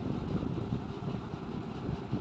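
Steady low background rumble with no speech. It sounds like distant traffic or a running machine.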